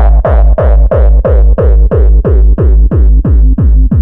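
Dutch gabber hardcore track: a distorted kick drum pounds alone at about three hits a second, each hit with a deep booming tail.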